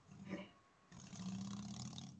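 A motor trike's engine passing, faint and steady, starting about a second in.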